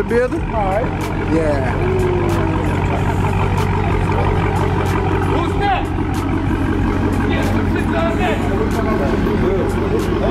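Dodge Charger's V8 idling with a steady low rumble as the car creeps backward, its exhaust freshly worked on at a muffler shop.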